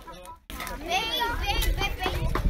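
Children talking and chattering at play, their high voices overlapping; the sound drops out briefly at the start before the voices come in.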